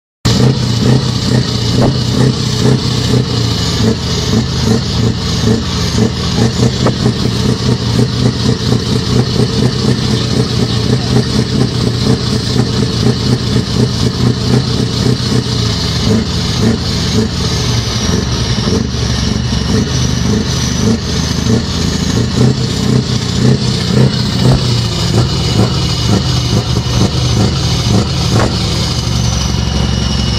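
Scania R620 truck's V8 diesel engine being revved hard and held at high revs, loud and steady throughout.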